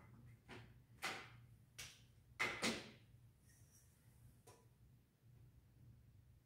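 Faint dry-erase marker strokes and ruler taps against a whiteboard: about six short scratchy sounds in the first half, the loudest about two and a half seconds in, over a low steady room hum.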